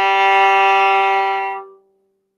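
Violin playing one long bowed low G, the last note of a three-octave G major scale played downward. The note holds steadily, then fades out a little before the end.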